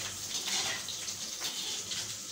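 Steady hissing background noise, even and unbroken.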